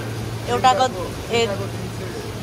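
Water spilling over the rim of an upper seafood display tank into the live-crab tank below: a steady splashing over a constant low hum, with a voice speaking twice briefly.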